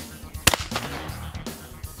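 A single shotgun shot about half a second in, sharp and loud, fired at a clay target, over quiet background music.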